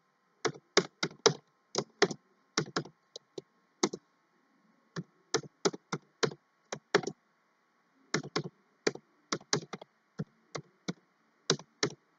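Typing on a computer keyboard: irregular runs of quick key clicks, broken twice by pauses of about a second.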